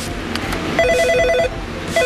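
Nortel Norstar digital desk phone's electronic ringer trilling in short warbling bursts, one starting about a second in and another at the very end, as it is called from a rotary dial extension.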